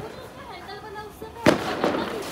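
A handheld firework tube firing a single shot about one and a half seconds in: a sharp bang with a short ring after it.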